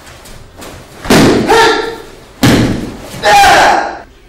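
Thuds of a body being thrown onto the mat during a kempo throwing kata, with sharp kiai shouts. There are three loud, sudden bursts a little over a second apart, and the last is a drawn-out shout.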